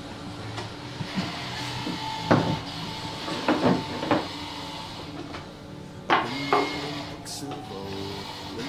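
Wooden tray pieces and small metal hardware being handled and set down on a tabletop: a series of knocks and clicks, the loudest about two seconds in and again around six seconds, over faint background music.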